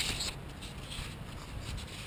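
Faint rubbing and light clicks of a small action camera being handled and repositioned, over a low steady background hiss.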